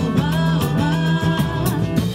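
Live samba band playing, with a singer's held notes over a steady bass and regular percussion strokes.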